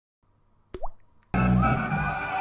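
A single short plop with a quick rising pitch, like an edited-in 'bloop' sound effect, out of silence. Background music with a steady bass line starts just after it and is the loudest thing.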